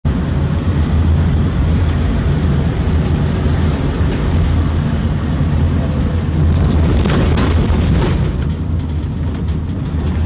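Car driving along a road: a steady low rumble of tyres and engine with a hiss of road noise above it, heard from inside the moving car.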